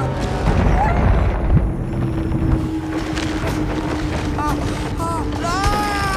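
Animated-film soundtrack: music over a deep rumble, with short wordless vocal cries that rise and level off near the end.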